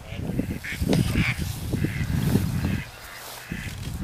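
A flock of geese honking in flight, a string of short, separate calls over a low rumble.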